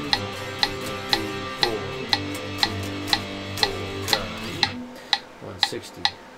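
Electric guitar playing power chords in time with a metronome clicking twice a second, in a slow tempo-practice exercise. The chords stop about four and a half seconds in, leaving the metronome clicks on their own.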